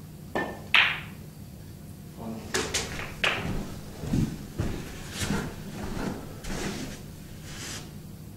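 Snooker cue tip striking the cue ball, then a sharp clack about half a second later as the cue ball hits a red, the loudest sound. A few more clacks follow around two to three seconds in, then soft thuds of footsteps as the player walks round the table.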